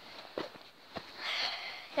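A person's breath drawn in close to the microphone about a second in, with a couple of soft handling knocks before it.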